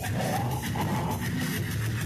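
Goregrind band playing live: loud, dense distorted guitars and fast drumming, heard from within the crowd.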